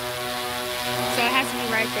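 Large multirotor camera drone hovering, its propellers making a steady hum of several tones; a voice speaks briefly in the second half.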